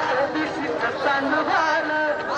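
A crowd of voices talking and calling out at once, with music playing underneath.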